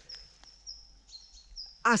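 Faint, high, thin chirps, each a short steady note, repeating about three times a second, with light rustling of vegetation. A woman starts to speak near the end.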